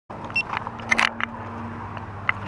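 A steady low engine hum in the background, with scattered short clicks and scrapes over it.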